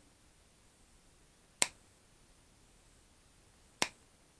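Side cutters snipping through insulated power-lead wires, twice: two single sharp snaps, one a little before halfway and one near the end, with quiet between them.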